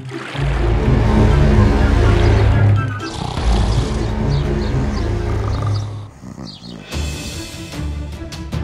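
Deep animal roar sound effect for an animated giant gorilla, over dramatic background music.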